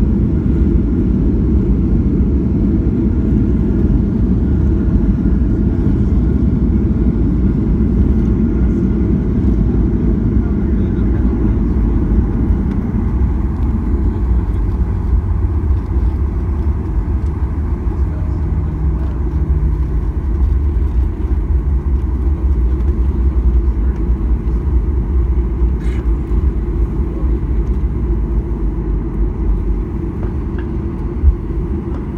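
Cabin noise of a Boeing 737 rolling along the runway: a loud, steady low rumble of jet engines and wheels that eases a little about halfway through.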